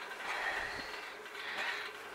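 Low, steady rustling and shuffling of sheep crowding close together in a pen.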